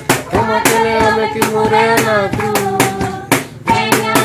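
A group of children singing a praise hymn together, with steady rhythmic hand-clapping about two to three claps a second.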